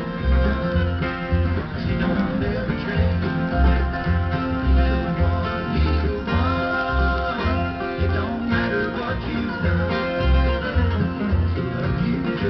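Bluegrass music: a Fender Malibu acoustic guitar flatpicked along with a bluegrass band on the radio, over a steady bass beat of about two notes a second.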